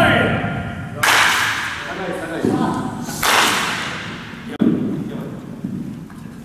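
Wooden baseball bat hitting pitched balls: two sharp cracks about two seconds apart, echoing in a large indoor hall, each followed about a second later by a dull thud.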